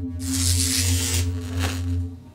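Intro logo sound design: a steady low synth drone with a bright rushing whoosh that starts just after the beginning and lasts about a second, then a shorter whoosh near the end. The drone stops at the end.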